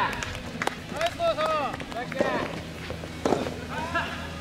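Short shouted calls from voices around the soft tennis courts, with a few sharp knocks of soft tennis balls being hit or bounced, spaced about a second apart.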